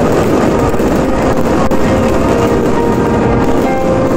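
Loud, steady rush of wind and water from a sailboat under way in choppy seas, buffeting the microphone, with faint piano music beneath.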